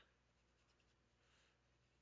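Near silence, with only the very faint scratch of a ballpoint pen drawing wavy underlines on paper.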